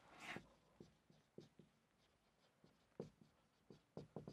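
Faint strokes of a marker pen on a whiteboard as a word is written: a few short, quiet scrapes and taps, the clearest near the start and about three seconds in.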